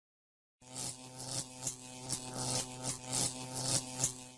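Electric buzzing hum, like a flickering neon sign, with irregular crackles a few times a second. It starts about half a second in.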